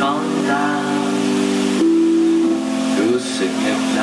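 Live band music: long held chords that change about two seconds in, with a singer's voice sliding between notes over them.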